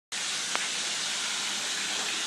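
A steady, even hiss with one faint click about half a second in.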